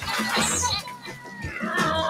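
Cartoon Lemmings chattering in high, squeaky gibberish voices. About a second and a half in, a steady humming tone sets in and holds.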